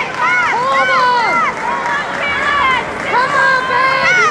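Crowd of spectators and coaches shouting and calling over one another, many high voices overlapping in rising-and-falling calls.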